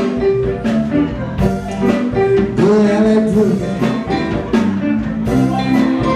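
Live blues band playing: electric guitar, bass guitar and drums, with an amplified harmonica and a woman singing, the pitched lines bending and sliding.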